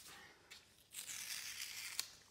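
Blue painter's tape being peeled off drawing paper: a steady tearing hiss lasting about a second, starting about a second in.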